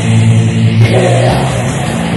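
Black/thrash metal from a 1985 cassette demo: heavily distorted electric guitar and bass holding low, sustained chords, loud and dense, with the held notes shifting a little past a second in.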